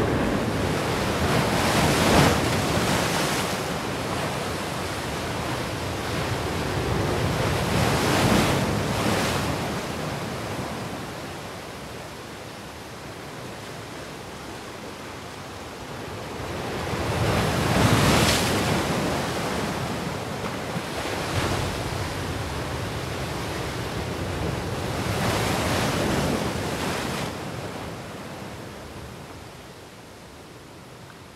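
Rushing water noise like surf, swelling and falling away in slow surges several seconds apart, then fading down near the end.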